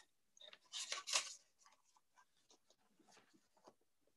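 Greeting-card stock rustling as the cards are handled: two short rustles about a second in, then near silence.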